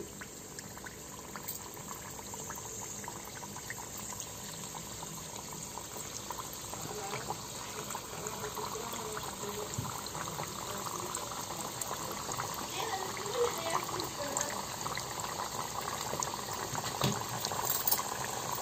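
Thekua dough pieces deep-frying in hot oil in a steel pan: a steady sizzle dotted with small crackles, slowly getting louder.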